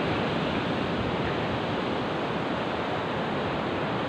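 Steady rush of surf washing onto a sandy beach, mixed with wind blowing across the phone's microphone.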